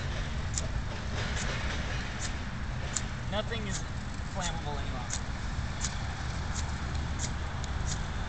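A Kodiak magnesium fire starter's rod being struck again and again, a short sharp scrape about every three-quarters of a second, without lighting the paint thinner. A steady low rumble runs underneath.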